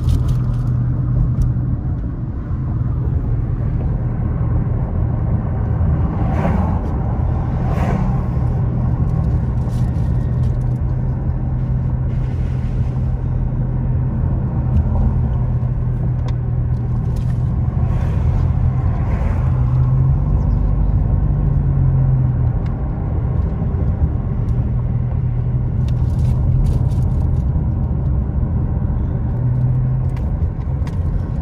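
Car engine and tyre noise heard from inside the cabin while driving: a steady low engine hum that rises in pitch briefly about two-thirds of the way through and then settles back, with a few short swells of road noise.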